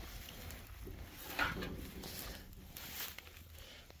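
Faint footsteps and rustling in dry grass, with a few soft scuffs.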